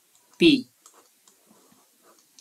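A single spoken syllable, then a few faint, scattered clicks of a stylus on a tablet screen as a formula is written and boxed.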